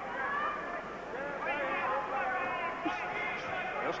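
Arena crowd shouting and cheering at a boxing bout, many voices overlapping at a steady level.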